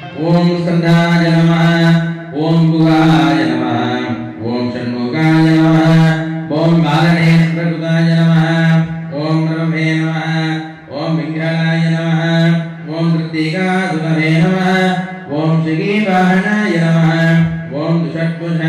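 A male priest chanting puja mantras in a steady, near-monotone recitation, in phrases of about two seconds with short pauses for breath between them.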